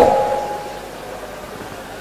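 Pause in amplified speech: the echo of the last words and a faint steady ring from the sound system fade out within the first second, leaving a steady hiss of room tone.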